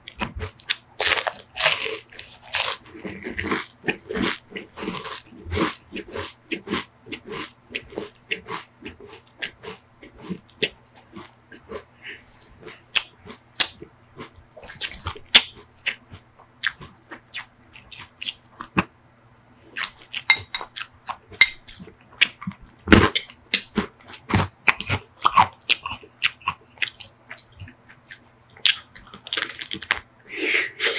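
Close-miked crunching and chewing of a crisp waffle ice cream cone and chocolate-coated ice cream: a steady run of short, sharp crunches with one louder crunch a little past the middle. Near the end comes a bite into the chocolate shell of a Magnum ice cream bar.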